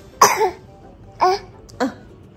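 A baby lets out three short, cough-like sounds; the first is the loudest and the next two follow about a second later and half a second apart.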